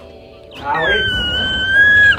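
A woman's long, high-pitched scream, starting about half a second in and held for about a second and a half before it breaks off.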